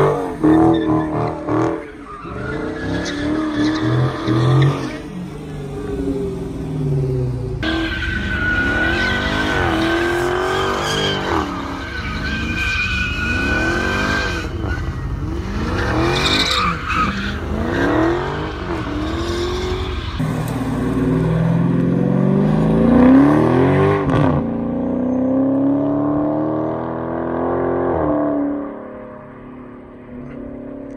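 Dodge SRT and Scat Pack V8 engines revving up and down in repeated swells as the cars spin donuts, with the tyres squealing against the pavement. The sound changes abruptly several times where clips are cut together, and drops away near the end.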